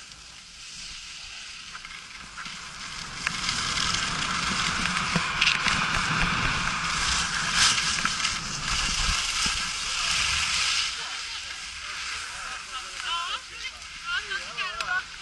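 Skis hissing and scraping over packed snow at speed during a downhill run, with wind rushing over the microphone. It builds a few seconds in, stays loud until about three seconds from the end, then eases.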